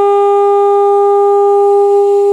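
Alto saxophone holding one long, steady note in an unaccompanied jazz improvisation.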